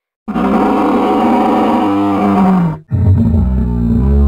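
Dinosaur roar sound effect: two long, loud bellowing calls, the first lasting about two and a half seconds with its pitch falling at the end, the second deeper one starting about three seconds in.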